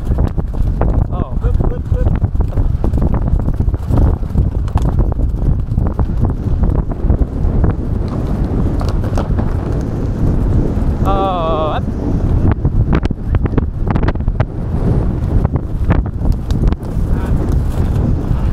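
Racehorses galloping on turf, close, rapid hoofbeats with heavy wind noise on the rider's camera microphone. About eleven seconds in, a brief wavering high-pitched call cuts through.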